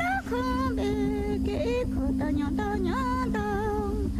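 A woman singing a slow lament in held, wavering notes over a steady low hum.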